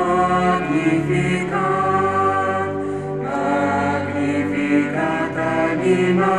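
Choir singing a slow piece in long held notes, moving to a new note every second or two with a slight slide into each.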